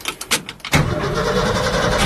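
1966 Ford F-100's engine cranking briefly on the starter in a cold start with the choke pulled out, then catching about three-quarters of a second in and running steadily.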